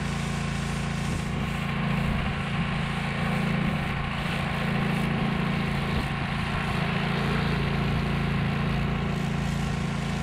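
Gas-engine pressure washer running at a steady pitch, with the hiss of its water jet spraying against the side-by-side's body and wheel. The spray gets a little louder about two seconds in.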